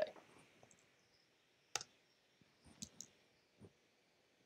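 A few short, faint computer-mouse clicks over near quiet: one sharper click a little under two seconds in, a quick pair near three seconds, and a weaker one shortly after.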